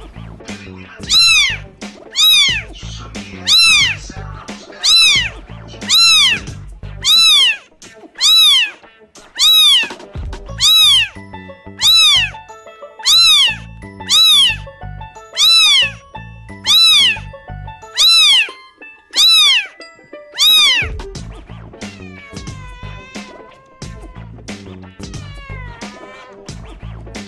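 A kitten meowing over and over, high-pitched, about one meow a second, each meow rising then falling in pitch, over background music with a steady beat. After about twenty seconds the regular meows stop and quicker, shorter, wavering mews follow.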